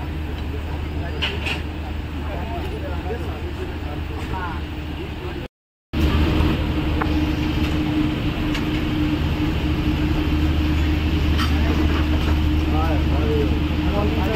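Steady low engine hum with faint voices over it. It drops out completely for a moment a little before halfway, then comes back a bit louder.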